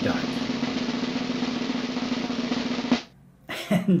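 Snare drum roll, a steady dense roll that stops abruptly about three seconds in.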